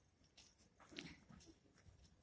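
Near silence, with a few faint clicks and one brief faint sound about a second in.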